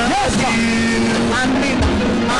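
Worship music: voices singing long held notes over a sustained backing, with a low drum thump near the end.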